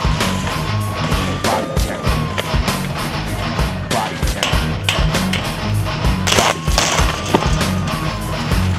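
Music with a heavy, steady beat and a synth line that glides up and down in pitch, with two brief hissing bursts about six and a half seconds in.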